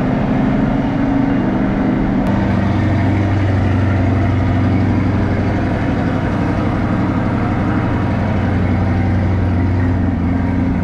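2022 Chevrolet Corvette C8.R Edition's mid-mounted V8 idling steadily through its Z51 adjustable exhaust. About two seconds in there is a faint click and the idle settles into a lower, deeper note.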